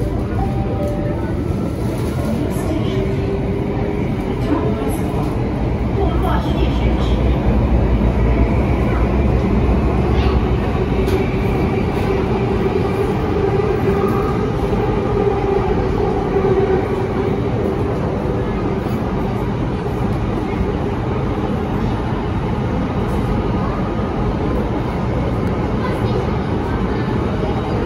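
Interior of a Bombardier Movia C951 metro car running on the line: a steady rumble of wheels on rail that grows louder for a few seconds about a quarter of the way in. A humming motor whine swells in the middle and then fades.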